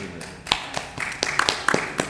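A quick series of about eight sharp taps, unevenly spaced, the loudest a little after the start and near the end.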